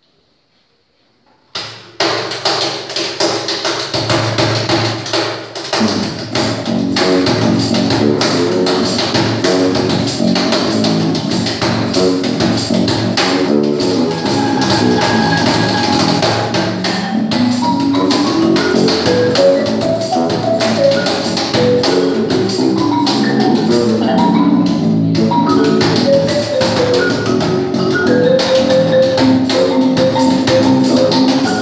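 A live contemporary marimba ensemble with cajón and bass guitar starts a song about two seconds in and plays on loudly. Quick mallet runs on the marimba sound over a steady cajón beat, with a long run of notes climbing and then falling back in the middle.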